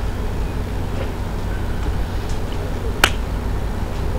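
A single sharp click about three seconds in, over a steady low rumble.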